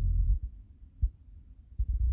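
Low rumble with two short soft thumps, about one second in and near the end: handling noise on a hand-held phone's microphone.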